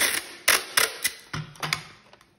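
Duct tape being pulled off the roll and torn, a run of sharp ripping crackles in the first second or so, then weaker ones.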